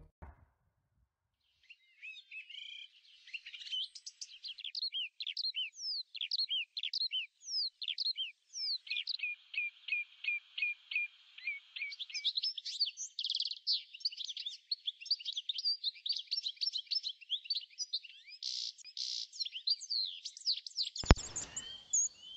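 Birdsong: many short, high chirps and whistled notes, including a run of quickly repeated falling notes about halfway through and a few buzzy trills later on.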